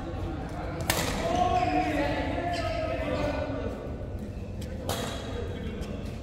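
Badminton rackets hitting a shuttlecock in a large echoing sports hall: two sharp hits about four seconds apart, the first the loudest, with a few fainter clicks between.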